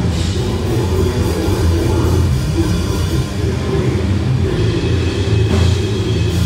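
Live death metal band playing loud and without a break: a drum kit pounding under heavily distorted guitars.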